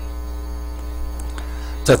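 Steady low electrical hum with a ladder of higher overtones, holding unchanged throughout.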